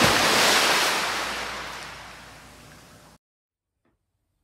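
Transition sound effect: a sudden burst of rushing, surf-like noise that fades steadily over about three seconds and then cuts off abruptly.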